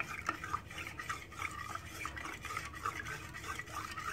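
Steel spoon stirring maida flour batter in a stainless steel mug: a continuous run of light scraping and clinking against the cup's sides.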